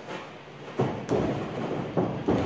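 A few heavy footfalls on a boxing ring's padded floor, the first a little under a second in, another just after, and one more near the end.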